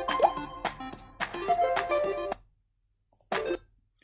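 Light background music with plucked notes from an animated app tutorial, with a short rising blip-like sound effect about a quarter second in. The music stops abruptly about halfway through, followed by a brief blip of sound near the end.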